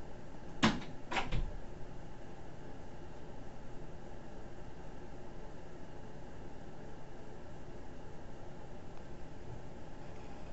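A door being shut: two knocks about half a second apart, then steady room tone with a faint hum.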